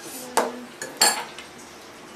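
Utensils and dishes clinking together: about four sharp clinks, the second with a short ring and the loudest about a second in.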